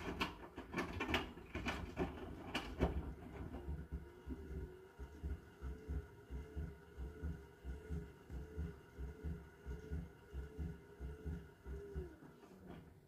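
Hotpoint NSWR843C washing machine drum turning with its motor humming steadily, and the laundry thumping in the drum about twice a second. The first few seconds hold irregular knocks and clicks.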